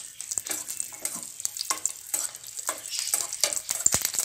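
Cashews and raisins sizzling as they fry in a steel pan, with a metal spoon scraping and clinking against the pan as they are stirred; a sharp clink just before the end.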